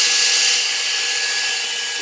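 Cordless drill running steadily, spinning a CD on a rubber-backed jig while 3000-grit wet sandpaper is pressed against the disc: a constant motor whir with the hiss of the paper rubbing the plastic.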